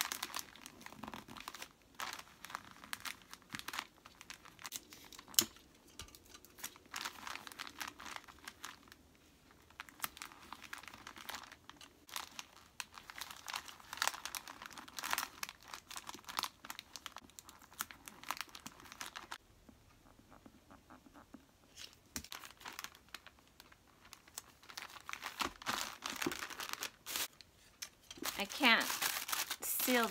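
Wrapping paper crinkling and rustling in irregular bursts as it is folded and creased around a gift box, with a sharp snap about five seconds in and a quieter pause about two-thirds of the way through.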